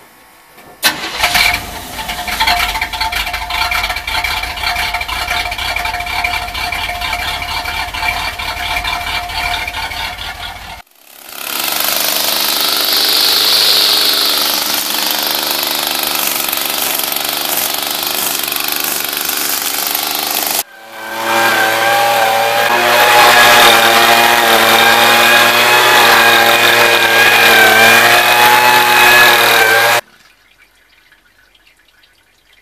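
An old GMC truck's 305 engine starts with a sharp burst about a second in and runs steadily for about ten seconds. A steady hiss follows for about ten seconds, then for the last nine seconds a rock saw cuts stone with a loud, wavering whine.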